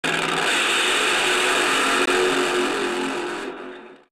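Logo intro sound effect: a loud, steady rushing noise with a mechanical, motor-like character, fading away over the last second and a half.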